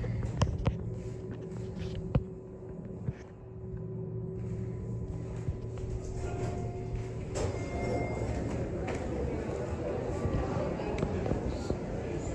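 Schindler elevator car at a landing: a steady low hum with a few sharp clicks and knocks in the first seconds. About seven seconds in the hum gives way to open, busier background noise with voices and music as the car doors open onto the floor.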